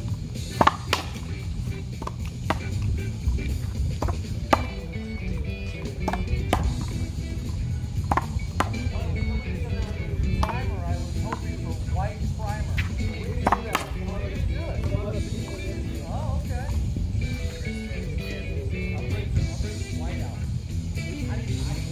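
A racquetball rally on a one-wall concrete court: sharp pops at irregular intervals as the ball is struck by racquets and hits the wall and floor, over background music and voices.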